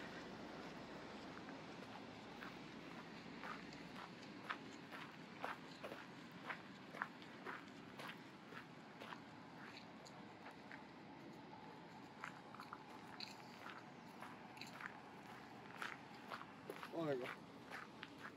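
Footsteps crunching on a gravel path, about two steps a second, faint over a low background hum. A brief voice is heard near the end.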